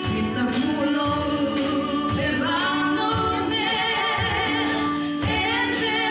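A worship band playing a gospel song live, women singing the melody over guitars and keyboard with a steady beat.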